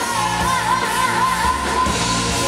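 Live rock band playing amplified in a bar, with guitars, drums and keyboard, while a singer holds one long note with a wide, wavering vibrato.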